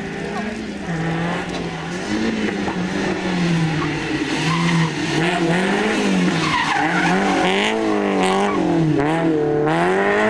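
A rally-prepared Renault Clio Sport's four-cylinder engine, revving up and down on and off the throttle as the car approaches and takes a tight bend, getting louder as it nears. A brief tyre squeal comes as it passes, about seven seconds in.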